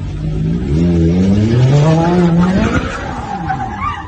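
Ferrari F430's V8 revving hard under acceleration, its pitch climbing in two sweeps with a short drop between them as it shifts up. It eases off about three seconds in, and the tyres squeal briefly near the end as the car slides through the turn.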